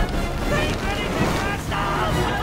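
Sea waves and surf mixed with music from a film soundtrack.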